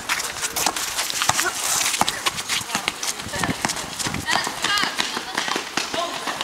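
Basketball players' running footsteps and a basketball bouncing on a hard outdoor court, an irregular run of sharp knocks, with players' voices calling out.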